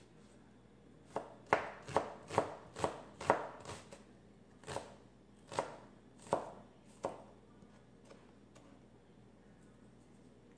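Kitchen knife chopping shallots on a cutting board: about a dozen sharp knocks, starting about a second in at roughly two a second, then spacing out and stopping about seven seconds in.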